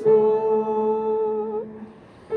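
A small group sings a hymn with keyboard accompaniment, holding one chord at the end of a phrase. The chord fades out shortly before the next phrase begins.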